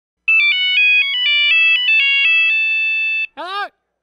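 Electronic ringtone-style melody of clean beeping notes, several sounding together and stepping quickly in pitch before ending on a held note. It is followed near the end by one brief sound that rises and falls in pitch.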